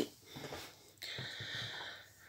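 A person sniffing in through the nose, one breath lasting about a second, starting about a second in.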